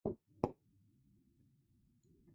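Two short clicks about half a second apart, followed by a faint low hum.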